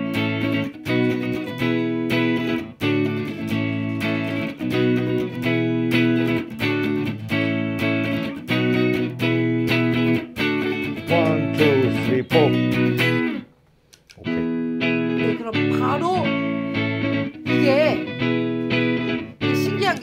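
Electric guitar strumming a short repeating chord progression through a Valeton Dapper Looper Mini pedal as it is recorded into a loop. The sound breaks off briefly about 13 seconds in, and then the loop plays back, starting cleanly without its opening chord being cut off.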